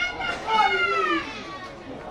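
High-pitched young voices shouting and calling out, with one loud, long call starting about half a second in and falling away after about a second.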